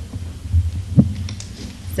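A steady low hum with a couple of soft, low thumps, about half a second and a second in, picked up by the table microphones.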